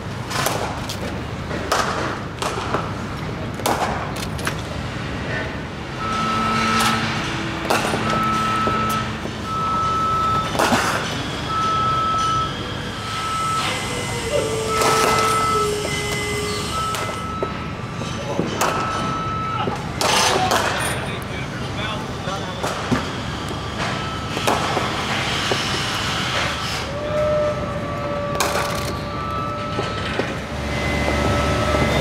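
Cricket net practice: sharp, irregular cracks of a bat striking the ball and the ball thudding into the netting, over a background of distant voices and outdoor hum. A high, steady beep repeats in short regular pulses through the middle and again near the end.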